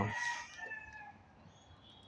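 A bird's long drawn-out call, falling slightly in pitch over about a second.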